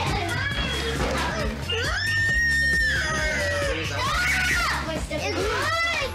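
Young children screaming and shouting as they squabble, with a long high shriek about two seconds in and more shrieks around four seconds and near the end, over background music with a steady low beat.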